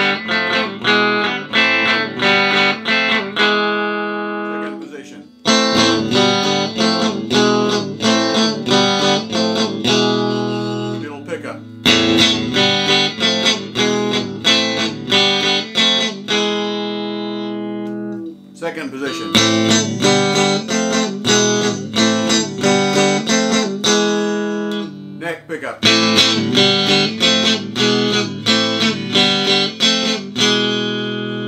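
Fesley FDK800 Strat-style electric guitar played in chords, starting on its bridge humbucker. About five short phrases of quick strummed chords, each ending on a chord left to ring and fade, with brief breaks between them.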